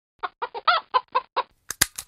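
A chicken clucking: about seven short clucks in quick succession, followed by three sharp clicks near the end.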